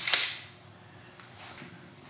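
A steel tape measure's blade snapping home into its case: one sharp click just after the start, with a brief rattling hiss that dies away within half a second. After that only faint room tone.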